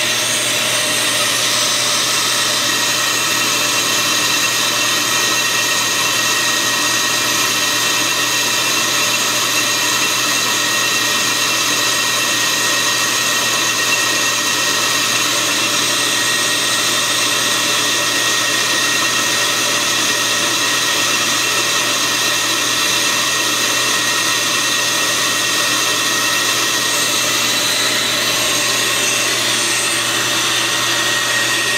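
Brake lathe running steadily, with its twin cutting bits skimming both faces of a spinning brake rotor on fast feed. The sound is a steady whir with a high ringing tone running through it.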